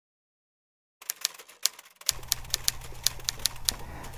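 Typewriter keys striking in a quick, uneven run of about four clicks a second, starting about a second in, as a title is typed out letter by letter. A low steady hum joins under the clicks about two seconds in.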